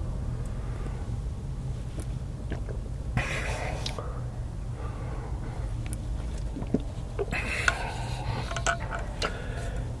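Sipping from a travel mug, heard as two stretches of slurping and swallowing, over a steady low hum inside a car.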